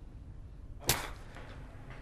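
A single sudden sharp crack about a second in, trailing off quickly, over a low steady background hum.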